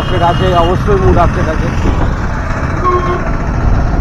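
Motorcycle riding along a street, with a constant heavy low rumble of engine, road and wind noise on the microphone. A man's voice is heard briefly in the first second or so.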